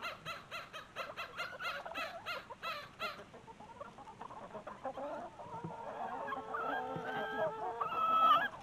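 A flock of chickens clucking: a quick run of short clucks for the first three seconds, then longer, drawn-out calls towards the end.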